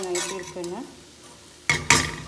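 A slotted metal spoon stirring a drumstick-leaf and egg stir-fry in a pan, with a loud scrape of the spoon against the pan near the end. A woman's voice talks over the first part.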